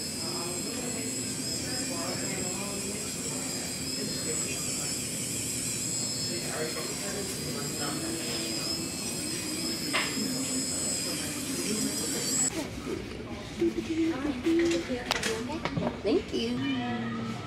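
A small high-speed electric motor of a nail salon tool whining steadily, its pitch wavering slightly, with voices murmuring underneath; the whine cuts off about twelve seconds in.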